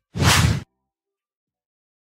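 A single whoosh transition sound effect, about half a second long.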